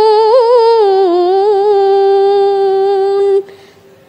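A Quran reciter's voice holding one long drawn-out vowel in tartil recitation, with quick ornamental wavering in pitch for about the first second and a half, then a steady held note that cuts off sharply about three and a half seconds in.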